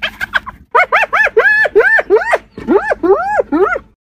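Spotted hyena giggling: a rapid run of high, arching yelps, about four a second, in two bouts with a brief break halfway.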